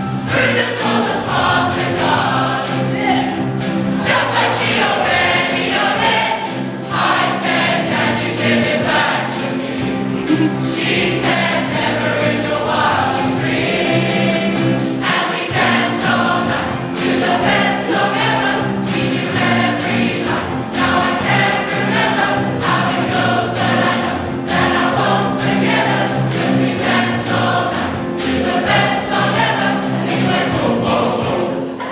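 A large choir singing a pop-song medley in harmony, with instrumental accompaniment keeping a steady beat.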